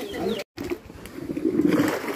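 Peeled cassava roots tipped from a bucket into a concrete tank of soaking water, a splashing rush that builds near the end.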